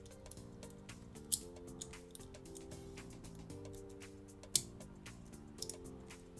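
Soft background music with steady chords, with a few sharp plastic clicks from a clear-plastic Diamond Hammerhead Bakugan being folded shut by hand: one a little over a second in, a louder one about four and a half seconds in, and a couple more near the end.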